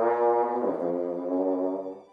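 French horn played low with a loose embouchure and slow airstream, holding a note and moving to a second held note a little before halfway, then stopping just before the end; the low register almost sounds like a tuba.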